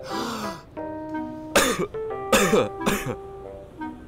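A person gasps for breath, then coughs hard three times, over background music with sustained keyboard notes.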